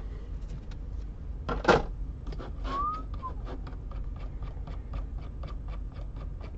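A run of light, quick clicks that grows busier after about two seconds, with one louder noisy click a little under two seconds in and a single short rising chirp about three seconds in.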